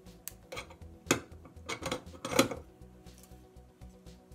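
A few sharp metallic clinks and clatters, two of them loud, as a soldering iron is put back into its metal stand and the soldered brass piezo disc is handled.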